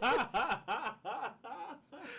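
Two men laughing: a run of short chuckles that grow fainter and die away by the end.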